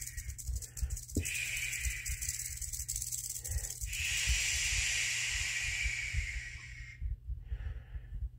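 A person shushing in long, steady 'shhh' hisses of two to three seconds each, with quick breaths between them and a fainter short one near the end. It is done to calm a defensive rattlesnake: the snake takes the hiss for wind carrying its scent away.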